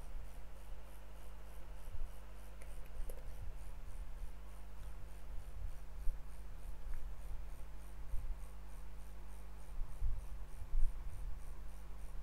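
Steady low electrical hum with faint scratchy rubbing and scattered soft low bumps.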